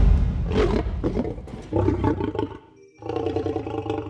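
Sound-design sting for a logo intro: a deep, growling roar-like rumble that trails off and almost stops about three seconds in, then a held drone with several steady pitches that fades near the end.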